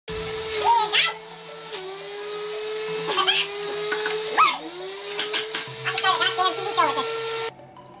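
Electric centrifugal juicer running with a steady whine that sags in pitch each time greens are plunged down the feed chute, then recovers, with the crunch of leaves being shredded. The motor cuts off suddenly near the end.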